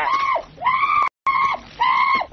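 Shrill screaming in four short calls, each held high and dropping in pitch as it breaks off. Just after the first second the sound cuts out completely for a moment, an edit, before the screams resume.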